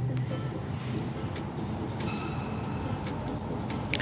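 Hikvision IP video intercom indoor monitor ringing for an incoming call from the door station: a faint electronic ringtone of short tones over a low hum.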